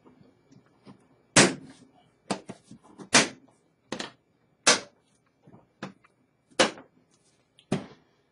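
Latches of a Pelican hard plastic case being snapped shut one after another: a series of sharp snaps, about seven loud ones spread over several seconds, with smaller clicks between them.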